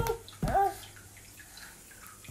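A baby's short, rising vocal sound about half a second in, just after a knock at the start, followed by faint rustling.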